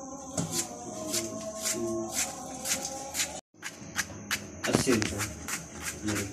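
Kitchen knife chopping diced potato on a plastic cutting board: a fast, uneven run of sharp taps of the blade on the board, several a second. The sound drops out for a moment just past halfway.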